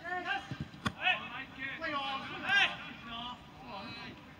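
Voices shouting and calling during a football training game, with one sharp knock about a second in.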